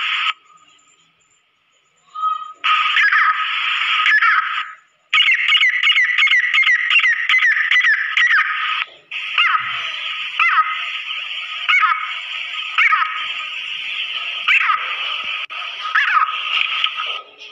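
Female grey francolin (teetar) calling. After a pause of about two seconds near the start, it gives a quick run of sharp notes, about four a second, then single sharp notes about once a second over a steady background hiss.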